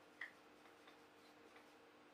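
Near silence: room tone with a faint steady hum and one brief faint tick a fraction of a second in.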